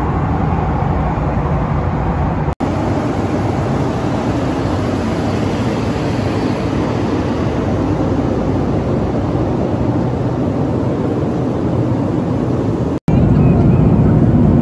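Steady cabin noise of a Boeing 757-200 in flight: a broad, even rush of engine and airflow noise. It drops out for a moment twice, about two and a half seconds in and a second before the end, and after the second break it comes back louder and deeper, heard from a window seat over the wing.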